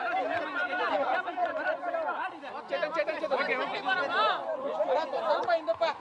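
Speech: a man talking into a cluster of press microphones, with other voices talking at the same time.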